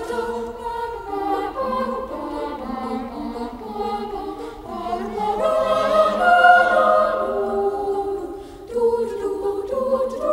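Boys' choir singing in several-part harmony with sustained treble notes, swelling loudest about six seconds in and briefly dropping away near the end.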